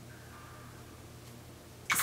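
Quiet room tone with a faint, steady low hum; a woman's voice starts right at the end.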